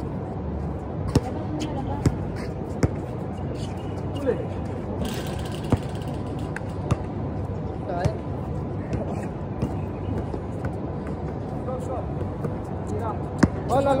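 Basketball bouncing on a hard outdoor court as a sharp knock every second or so at irregular moments, over a steady background hum and faint voices of players.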